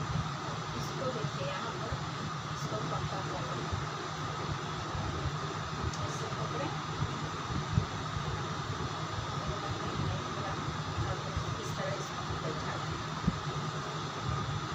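Steady low hum and hiss of background noise, with a brief sharp click around the middle and another near the end.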